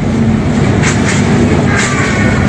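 Noise of a crowded room: a loud, steady low rumble with indistinct chatter and a few brief hissing sounds.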